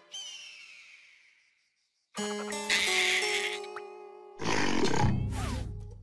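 Cartoon score and sound effects. A high shimmering glide falls and fades away, followed by a brief silence. Held musical notes then come in, and a louder, busier passage follows about four and a half seconds in.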